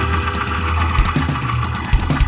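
Live rock band playing: held low bass notes under steady guitar and keyboard tones, with a few drum hits, the louder ones about a second in and near the end.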